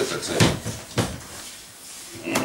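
Two short, sharp knocks about half a second apart in a small room.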